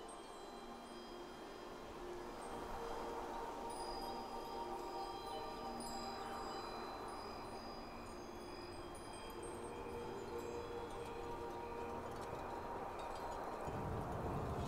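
Wind chimes ringing: many overlapping, lingering tones over a steady wind hush.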